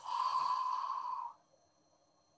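A woman breathing out slowly and audibly through her mouth: one long exhale that stops about a second and a half in, as part of a deep-breathing exercise.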